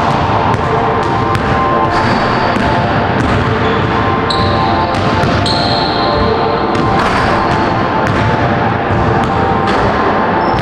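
A basketball bouncing and being handled on a hardwood gym floor, heard as irregular sharp knocks over background music at an even level.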